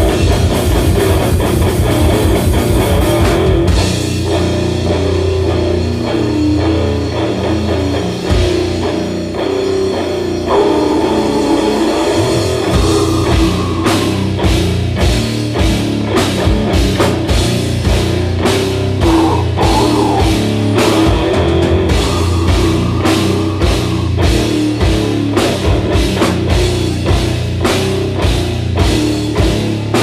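Live rock band playing an instrumental passage on electric guitars and drum kit. The drums drop out about four seconds in, leaving the guitars, and come back in around twelve seconds with regular hits through the rest.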